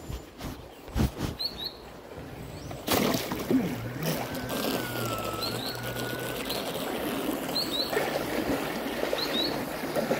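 Fabric rustling and knocks as a phone is pushed into a shirt pocket. From about three seconds in comes the steady whir and water rush of a Thrasher RC jetboat's electric motor and jet pump running through shallow creek water. A bird chirps in short pairs several times.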